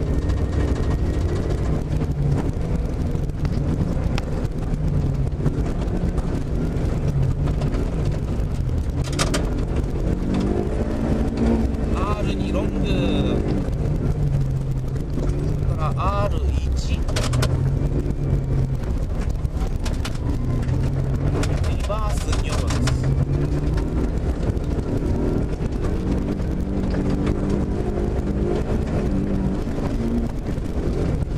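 Rally car engine heard from inside the cabin at speed on a snow stage. Its pitch climbs and drops again and again as the driver accelerates and changes gear.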